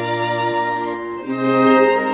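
Instrumental passage of an English folk song: fiddle and accordion play a slow tune over a held bass note. They move to new notes a little over a second in and swell louder.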